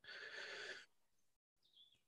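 Near silence: a faint hiss lasting under a second, then dead silence.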